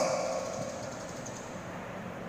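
A pause in the speech: the voice's echo dies away over about the first second, leaving a steady, faint background hum of room noise.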